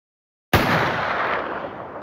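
A sudden loud bang about half a second in, fading out slowly over about a second and a half.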